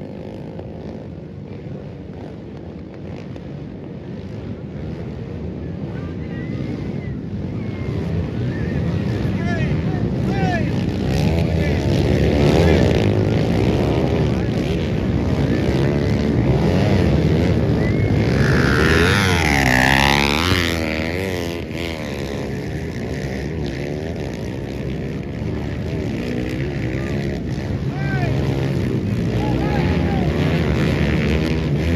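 Several dirt-bike engines revving and racing, the sound swelling from about a third of the way in, with rising and falling revs. The loudest, highest revving comes about two-thirds of the way through before it settles back to a steadier drone.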